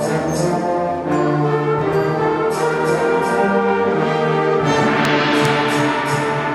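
School concert band playing a loud, brass-heavy passage of held chords with percussion strikes, building to a crash with a bright shimmering wash about five seconds in.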